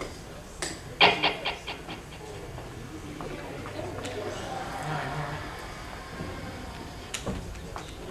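Hall room noise between songs, with a quick run of about six sharp taps about a second in that fade out over a second. A couple more clicks come near the end.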